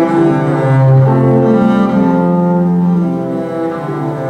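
Double bass played with the bow, a slow melody of long held notes that move step by step between low and middle pitches.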